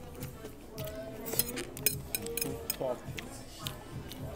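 Cutlery clinking on a plate a few times in quick succession in the middle, over background music and voices.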